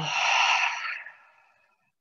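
A woman's long, audible exhale: a breathy rush of air that fades out after about a second and a half.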